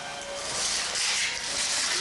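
Wrapping paper being torn and rustled as a present is unwrapped, a papery rasping noise that builds about half a second in and eases off near the end.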